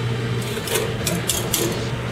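Heavy cream pouring into a pot of simmering soup over a steady low kitchen hum, with a few short scrapes of a wire whisk against the aluminium stockpot about a second in.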